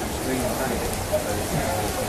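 Steady rain falling, an even hiss throughout, with faint indistinct voices in the background.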